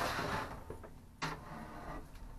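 Handling noise from a lidded plastic storage tub being carried: a soft rustle at first, then a single knock about a second and a quarter in.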